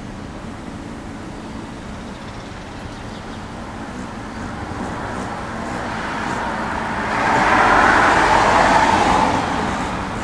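Road traffic: a steady hum from a passing vehicle that grows louder, is loudest about seven to nine seconds in, then fades.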